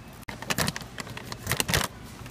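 Scissors cutting open a paper coffee-bean bag with a plastic liner, the packaging crinkling and rustling in two clusters of sharp crackles, about half a second in and again around a second and a half in.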